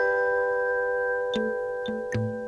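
Soft background score of chime-like notes ringing on and overlapping, with a couple of light tapped notes in the second half.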